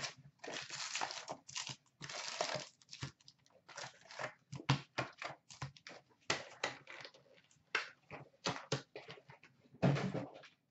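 A hockey card box being torn open and its wrapped card packs handled and stacked on a counter: irregular tearing, crinkling and rustling of card and wrapper, with a few sharper taps as packs are set down.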